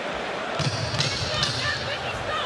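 Boxing gloves landing on the body during an inside exchange, a few dull thuds over arena crowd noise and voices.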